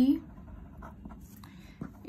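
Pen writing on paper: faint scratching strokes as words are written out, with a sharper tick near the end.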